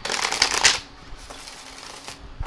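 A Tarot of Dreams deck being riffle-shuffled by hand: a quick, dense run of cards flicking against each other that lasts under a second at the start, then only faint room sound.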